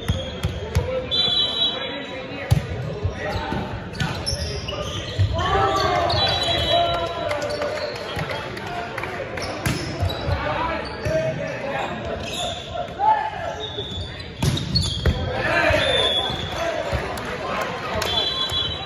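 Indoor volleyball rally in a large, echoing gym. A referee's whistle sounds about a second in and again at the end of the point. Between them the ball is bounced on the hardwood floor and then struck several times, with players and spectators shouting.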